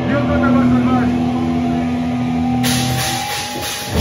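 Amplified guitar and bass of a live hardcore punk band holding a ringing note that fades near the end, with voices shouting over it; about two-thirds through, a hiss of cymbal or crowd noise comes in.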